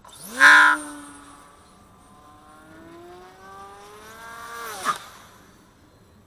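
Electric motor and propeller of an RC airplane on a 5S battery, whining as it passes. The pitch rises sharply to the loudest point about half a second in, climbs slowly after that, and drops steeply at a brief loud peak near five seconds as the plane goes by close.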